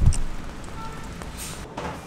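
Steady rain falling on a street and pavement, with a low rumble in the first moment.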